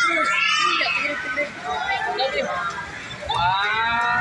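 Children's and adults' voices chattering and calling out, with high-pitched children's voices loudest about the first second and again near the end.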